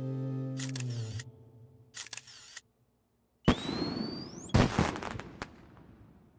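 Cartoon soundtrack: a held music chord that stops about a second in, a few sharp camera-shutter clicks, then, after a short silence, a burst with a rising whistle and a second burst about a second later, like a firework going up and bursting, fading away.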